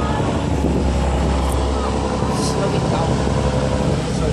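A fishing trawler's diesel engine running with a steady low drone as the boat passes close by, over a steady rush of its wash.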